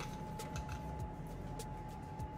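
Quiet kitchen room tone: a steady high-pitched electrical hum over a low hum, with a few faint clicks.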